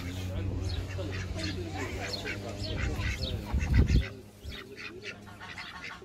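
A flock of ducks quacking, many short calls in quick succession, over a low rumble that stops about two-thirds of the way through.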